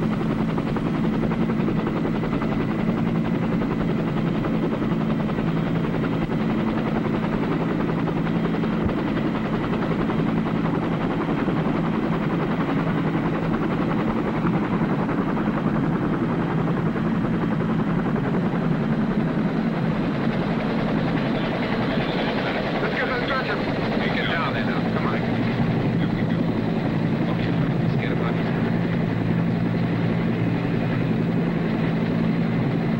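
A UH-1 Huey medevac helicopter's turbine and rotor making a loud, steady drone in flight.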